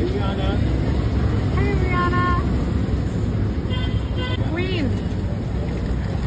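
Street noise with a steady low traffic rumble, and high-pitched shouts from people nearby three or four times.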